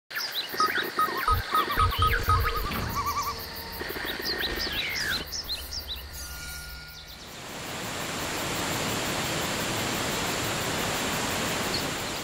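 Intro sting of electronic sound design: chirping, gliding blips over deep thumps for about seven seconds, then a steady rushing waterfall noise swells in and holds.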